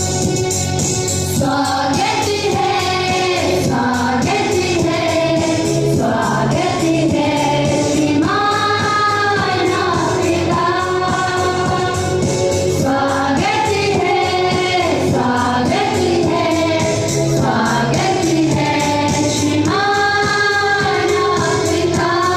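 A group of women singing a song together with instrumental accompaniment, the sung notes held for a second or two at a time.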